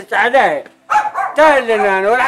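A man's voice in two loud phrases whose pitch swoops sharply up and down. A short pause comes just after half a second in.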